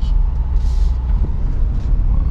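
Car engine running at low speed with a steady low drone, tyre and road noise heard from inside the cabin while driving. A brief hiss comes about half a second in.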